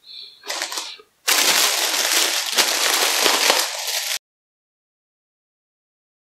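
Thin plastic bag crinkling and crackling as a head of lettuce is pulled out of it: a short crinkle, then about three seconds of loud, continuous crackling that cuts off suddenly into silence.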